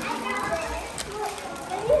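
Children chattering, several voices talking at once, with one voice saying "look" near the end.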